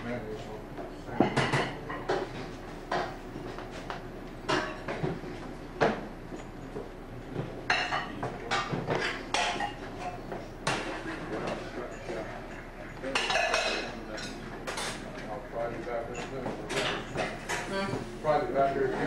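Irregular sharp clacks and clicks of hard objects knocking together, a dozen or more spread unevenly, with a few quick flurries, over faint voices in the room.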